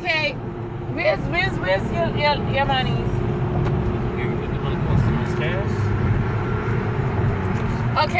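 Steady low road and engine rumble inside a moving car's cabin, with a voice over it for the first three seconds or so.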